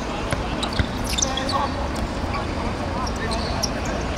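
A football kicked on a hard-surface pitch: a few dull thuds, the strongest about a second in, over a steady low rumble. Players shout briefly in between.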